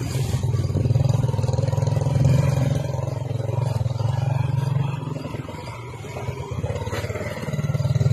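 A motor vehicle's engine running steadily as it drives slowly along a rough road, dropping back in the middle and picking up again near the end.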